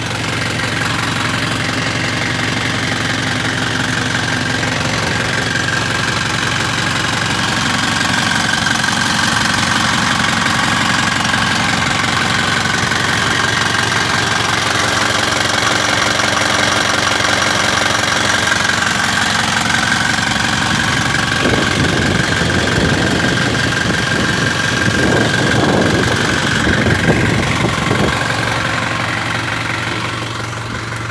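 Isuzu 4HG1 four-cylinder diesel engine idling steadily.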